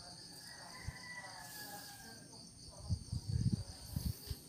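Crickets chirping steadily in the night, a continuous high-pitched trill. A few low thumps near the end.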